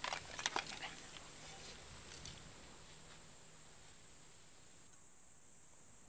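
A metal spoon clicking lightly against a small porcelain bowl: a quick cluster of sharp clicks in the first second and a couple of fainter ticks a second or so later, then only faint hiss.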